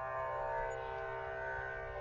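Soft, steady background music drone of several held tones over a low hum, with no voice.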